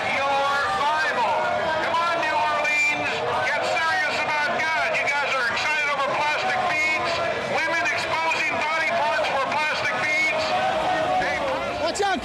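A man's voice amplified through a handheld megaphone, thin and tinny, talking continuously over street crowd babble.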